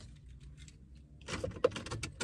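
Car keys jangling and clicking as they are handled at the ignition. There is a quick run of rattles in the second half, with one sharp click among them.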